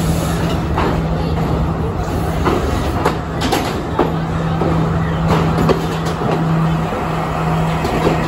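Sri Lanka Railways Class S14 diesel multiple unit running into the platform and past, with a steady low engine drone and irregular clicks of its wheels over the rail joints.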